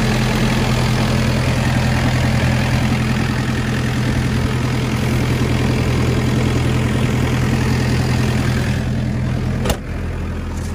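Kubota U55-5 mini excavator's diesel engine idling steadily, a replacement engine fitted this year. Just before the end there is a sharp click, and the hum then sounds lower and duller.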